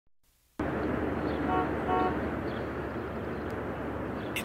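Steady outdoor background noise that comes in about half a second in, with two short toots of a horn about half a second apart near the middle.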